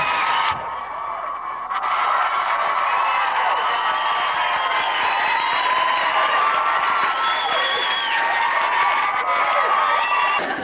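Studio audience cheering and clapping, many voices yelling at once over steady applause, with a brief dip about a second in.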